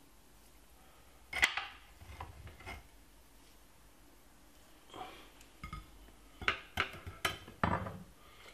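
Stainless steel mesh sieve clinking and knocking against a glass bowl and a ceramic plate while ginger juice is strained. There is one sharp clink about a second and a half in, a few lighter knocks after it, and a quick run of clinks near the end as the sieve is laid down on the plate.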